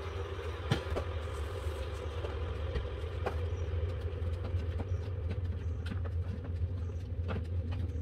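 A steady low hum runs throughout, with a few light clicks and knocks as a spoon, a bowl and containers are handled on a kitchen counter.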